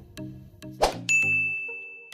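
Like-button animation sound effect: a short whoosh, then a bright bell-like ding that starts about a second in and rings on, over background music.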